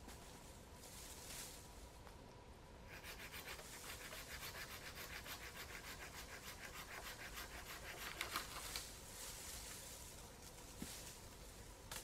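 Hand saw cutting through a wooden branch overhead: quick, even back-and-forth strokes that start about three seconds in and stop about nine seconds in.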